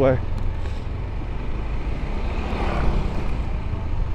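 Motorcycle riding slowly along a city street, heard from the rider's onboard microphone: a steady low rumble of the engine and road noise, with a brief swell of noise a little past halfway.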